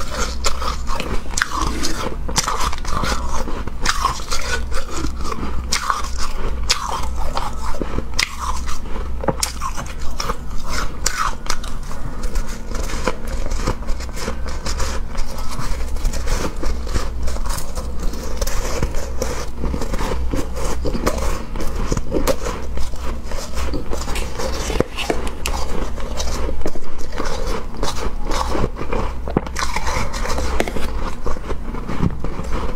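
Close-miked biting and chewing of packed shaved ice: a continuous stream of crisp crunches and crackles over a steady low hum.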